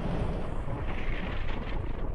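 Sound-effect rumble of an animated asteroid plunging through the atmosphere: a steady, deep, noisy roar that builds slowly.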